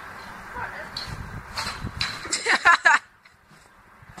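A loud burst of laughing or shouting from a young voice, about two and a half seconds in, that cuts off abruptly. Before it there is a low, rumbling noise.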